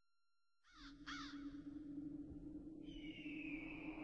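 Two short, harsh bird calls about a second in, then a longer high call that slowly falls in pitch near the end, over a low steady drone.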